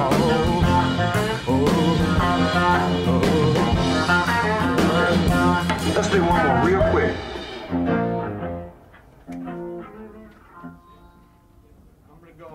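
A blues-rock band recording with electric guitar, bass and drums plays to its ending about eight seconds in. Faint voices follow.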